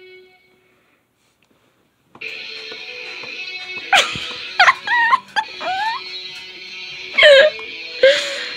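About two seconds of silence, then guitar chords from a tablet music app start and ring on steadily. Several loud, high, sliding yelps sound over the chords in the second half.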